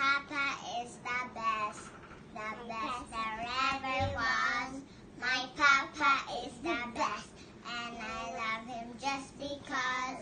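A young girl singing in short phrases, some notes held longer.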